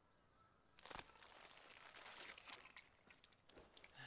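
Near silence, with faint rustling and a single soft click about a second in.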